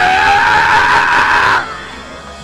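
A preacher's long, high-pitched held cry into a microphone, sliding up at the start, then holding steady before cutting off after about a second and a half.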